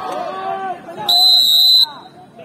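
Referee's whistle blown in one long, steady blast of just under a second, about a second in, calling a stoppage for a drink break. Players and spectators are talking before it.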